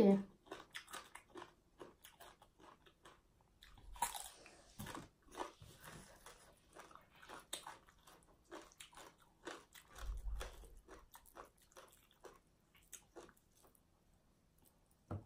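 Close-up eating sounds: crisp bites and wet chewing of raw Thai eggplant and papaya salad, many small crunches and mouth clicks. There is a louder crunch about four seconds in and a dull low thump around ten seconds.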